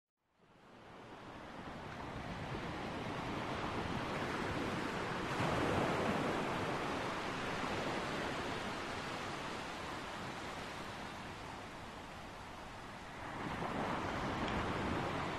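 Sea waves washing onto a shore, fading in over the first second, with a surge of surf about five seconds in and another near the end.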